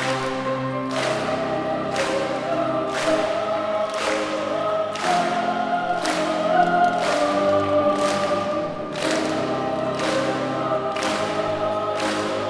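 Boys' choir singing a Chinese children's song in Mandarin. A sharp beat sounds about once a second beneath the voices.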